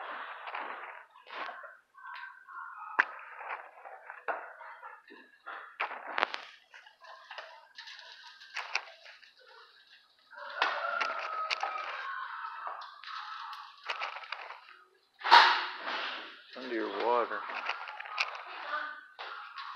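Indistinct voices with scattered sharp clicks and knocks, and one loud sharp crack about 15 seconds in.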